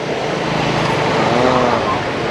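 Steady city street noise with traffic running, and a voice heard briefly about halfway through.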